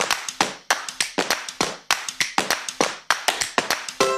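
Rhythmic handclaps and taps in a quick, uneven pattern of about five or six sharp strikes a second, each with a short echo: the percussion intro of the soundtrack.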